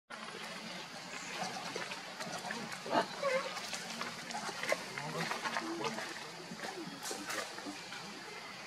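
Macaques making soft short grunts and calls, over a background of faint voices and scattered small clicks.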